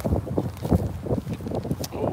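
Wind buffeting a phone's microphone outdoors, an uneven low rumble that rises and falls in gusts.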